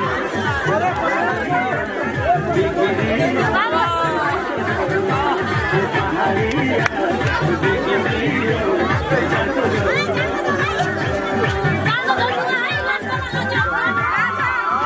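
Loud dance music with a steady, heavy beat, under a crowd of many people talking and calling out at once.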